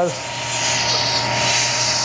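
Electrocautery pencil cutting through the tissue around a breast implant capsule with a hissing sizzle, which builds over the first second and stays steady after that.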